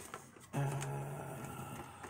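Cardboard advent calendar box and its packaging rustling and scraping as a small door is picked open, with a few faint clicks early on, under a long hesitant 'uh'.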